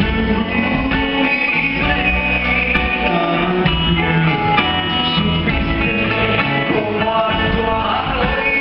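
Live band music: a man singing into a microphone, backed by guitar.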